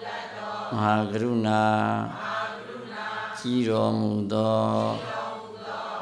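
A Theravada Buddhist monk chanting Pali in a low, steady monotone. He holds long notes in two phrases, with a quieter dip between them.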